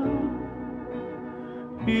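Instrumental accompaniment of a slow Roman song filling the gap between two sung lines, quieter held notes over a low bass; a male singing voice comes back in near the end.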